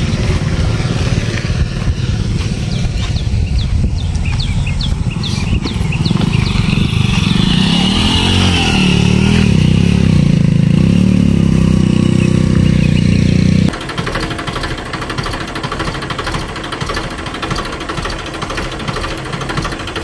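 Massey Ferguson tractor's diesel engine running steadily, heard close to the ground. It gets louder from about a third of the way in, then drops suddenly to a lower level about two thirds of the way through.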